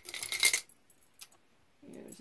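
Metal costume jewelry clinking and jangling as pieces are handled, a short bright burst in the first half second, then one faint click about a second later.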